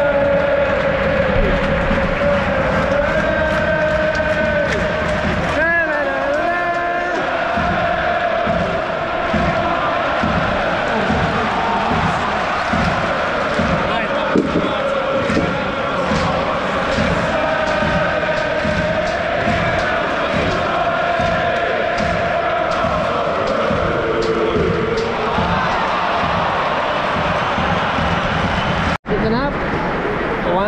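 Large football crowd of Arsenal supporters singing a chant together in a stadium. Through the middle of it a steady beat of hand claps keeps time, about two a second. The singing cuts off suddenly near the end.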